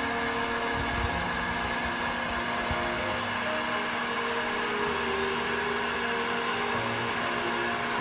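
Electric heat gun running steadily, its fan blowing with an even whoosh and a steady motor hum.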